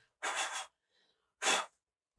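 Two short, noisy bursts of breath about a second apart, the first about half a second long, the second shorter and a little louder.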